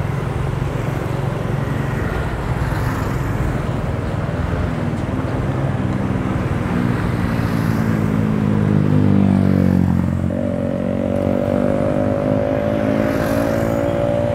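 Motorbike engine and street traffic heard from a moving motorbike. Over several seconds an engine's pitch climbs, peaking about two-thirds of the way through, then it holds a steady higher note to the end.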